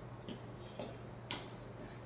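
A few faint clicks, the sharpest about a second in, over a low steady hum.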